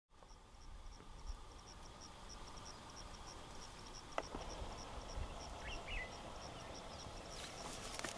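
An insect chirping steadily in a high, even rhythm of about three chirps a second, faint against quiet outdoor ambience. A brief sharp call sounds about four seconds in, and a short whistled call follows near six seconds.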